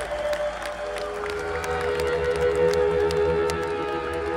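Live rock band on stage holding long, sustained electric guitar notes, with sharp claps and cheers from the surrounding crowd, recorded from within the audience.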